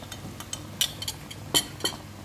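A few sharp clinks of a metal ladle against the cooking pot as the broth simmers, over a low steady hum.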